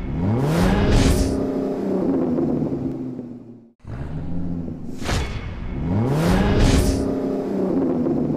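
Sound-effect car engine revving, its pitch climbing steeply, with quick whooshes over it. It fades out, then the same revving sting plays again about four seconds in.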